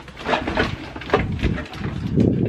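A woman's short bursts of laughter, mixed with the rustle of a cardboard box and plastic wrap as a coffee maker is lifted out of it.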